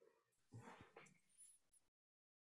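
Near silence on a video call, with a few faint, brief soft sounds in the first half.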